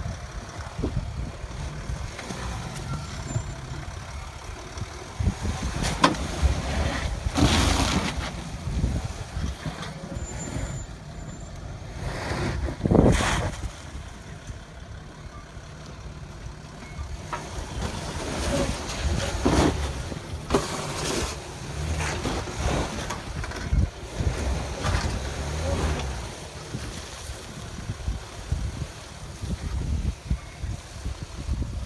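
Nissan Navara pickup's engine running at low revs as it crawls over an off-road axle-twister course, with a few louder surges along the way.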